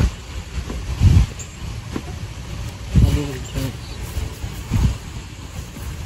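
Wind buffeting the microphone: a steady low rumble with stronger gusts about a second in, at three seconds and near five seconds.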